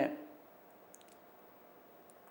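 A man's voice trails off at the end of a word, then a pause of quiet room tone with a few faint, very short clicks about a second in.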